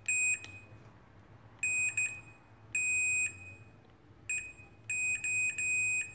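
Digital multimeter's continuity buzzer beeping on and off as the probes touch the pins of an oven control board: a string of high beeps, some short and stuttering, others held for about half a second. The beep signals a connection between the middle two pins of an eight-pin component, which may be a real short or just the design.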